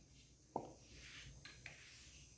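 Near silence: room tone, with one faint click about half a second in and a couple of softer ticks later.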